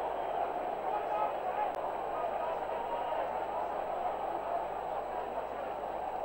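Football stadium crowd noise after a goal: a steady mass of many voices cheering from the stands.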